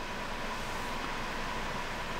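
Steady background hiss of room noise with no distinct events, and a faint steady tone running under it.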